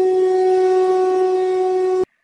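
One long held note with a horn-like tone, steady in pitch and loudness, that cuts off abruptly at the end.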